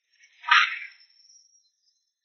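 A short, loud shout from a fighter in a hand-to-hand brawl, about half a second in, trailing off quickly.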